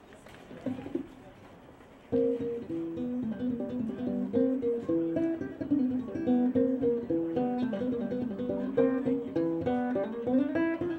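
A solo acoustic ukulele starts about two seconds in after a short quiet pause and plays a plucked melody of single notes and quick note runs.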